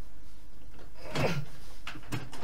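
Gaming chair creaking as a person sits down in it: one drawn-out creak with a falling pitch a little over a second in.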